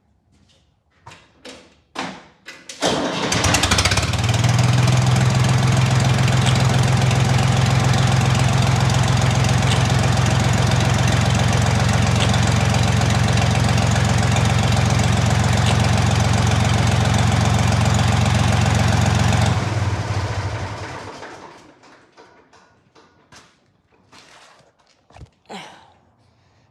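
A Ford tractor engine is started about three seconds in after a few short knocks, then idles steadily for about fifteen seconds with the PTO disengaged, before being shut off and running down.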